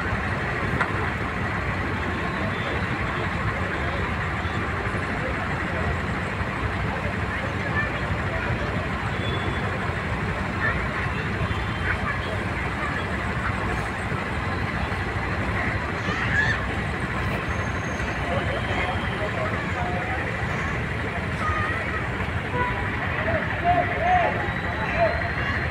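Busy road traffic: a steady wash of engine and road noise, with indistinct voices in the background.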